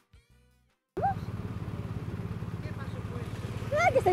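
Music fades out to silence, then about a second in a BMW R 1250 RT's boxer-twin engine is heard idling steadily with an even low pulse. Brief voices come in over it near the end.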